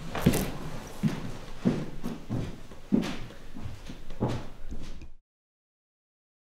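Footsteps on a hard floor at a steady walking pace, about eight steps, which cut off suddenly about five seconds in.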